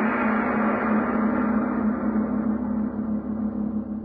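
A gong struck once, ringing on with a pulsing hum and slowly dying away: a sting marking a scene break in the radio drama.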